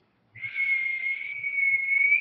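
A person whistling one steady high note for nearly two seconds, breathy, with a slight upward lift at the end.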